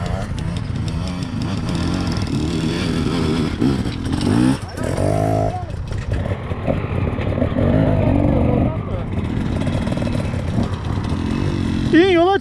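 Several enduro dirt bikes running at idle together, a steady engine hum, with indistinct voices over it.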